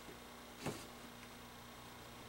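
A single sharp click of metal pliers touching down on the wooden block about two-thirds of a second in, over a faint steady low hum.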